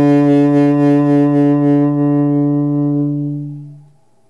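Saxophone holding one long low note with a slight waver, fading away to nothing about three and a half seconds in.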